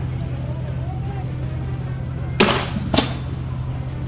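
Two sharp bangs a little over half a second apart, the first the louder with a brief ring after it, over a steady low hum.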